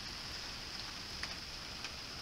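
Steady rain falling, a soft even hiss with a few faint taps.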